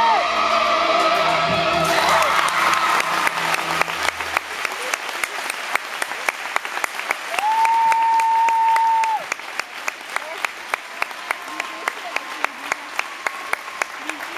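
The operatic music of the routine ends in the first few seconds, and audience applause takes over. Near the middle a single high tone is held for about two seconds, and the clapping then settles into a steady rhythm, about two to three claps a second.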